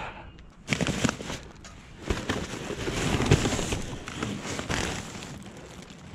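Plastic garbage bags rustling and crinkling as they are pushed about in a dumpster, with a few light knocks.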